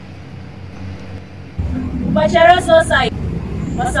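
Steady low outdoor background hum, then an abrupt jump in level about one and a half seconds in, followed by a girl's high voice speaking briefly into a microphone.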